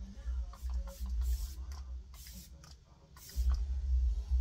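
Pump spray bottle of bi-phase facial serum mist spraying a fine mist: three or four short hisses, roughly a second apart, over a low rumble.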